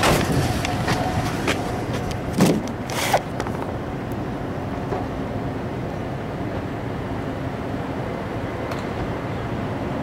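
Handling noise as a camera is moved and set in place: knocks and rubbing during the first few seconds, two of them sharper and louder. After that, a steady vehicle engine hum.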